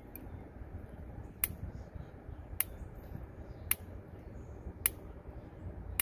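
Sharp, regular clicks about once a second over a low, steady background: the repeated clicking that runs through the recording.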